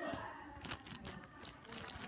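Scattered soft clicks and crinkles of hands working very sticky slime and its plastic bag.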